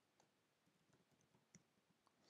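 Near silence, with a few very faint computer keyboard keystrokes; the clearest comes about one and a half seconds in.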